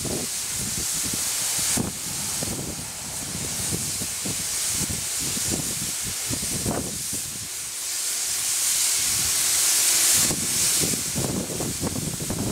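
Steam locomotive standing in steam, with a steady high hiss of escaping steam that swells about ten seconds in. Under it run irregular scrapes and knocks of ash being cleared out of the smokebox.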